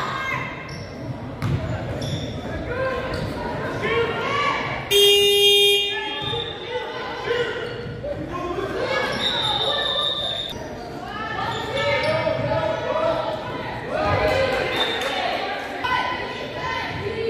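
A basketball bouncing on a hardwood gym floor, with players' voices carrying through the hall. About five seconds in a loud buzzing tone sounds for about a second, and near ten seconds a high steady whistle sounds for about a second.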